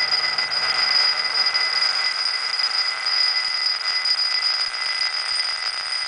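Steel ball spinning around a glass bowl on a pulse-driven Rodin toroid coil, rolling against the glass with a continuous ringing whir that swells and fades a little, over a steady high-pitched whine.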